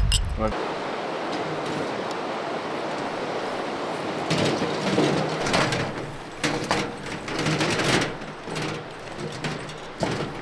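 A garden cart with a plastic tray pulled over rocky, grassy ground: a steady rolling noise, with a run of clattering knocks from about four to eight seconds in.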